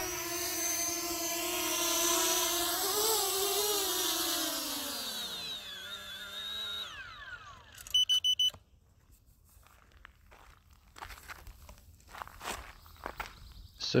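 Fimi X8 Mini drone's propeller motors whining at a steady pitch, then spinning down with a falling pitch and stopping about seven seconds in as the drone lands. About a second later there is a quick burst of rapid high beeps, followed by faint handling clicks.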